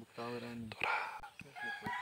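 A rooster crowing once, faintly.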